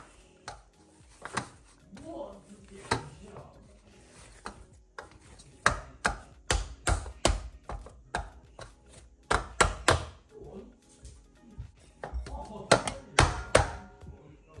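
Paratha dough being kneaded and pressed against a large steel plate, making a run of dull knocks in short clusters. Near the end a ceramic bowl is set upside down over the dough on the steel plate, adding a few sharper knocks.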